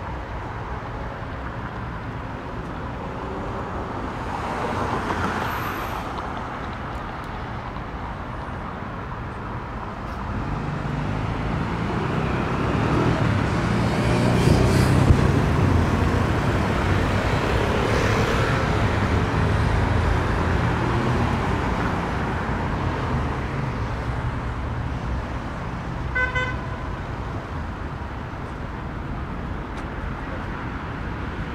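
City street traffic: cars passing close by, with a heavier, low rumble of passing traffic building from about ten seconds in, loudest around fifteen, then fading. A short car horn toot sounds near the end.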